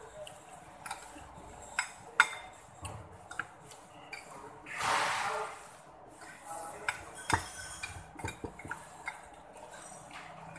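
Dishes clinking at a meal table: scattered sharp clinks and taps of ceramic plates and glassware, the loudest a little after two seconds in, with a breathy rush of noise lasting about a second around five seconds in.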